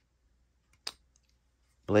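A single sharp click from a yellow snap-off utility knife being handled, about a second in.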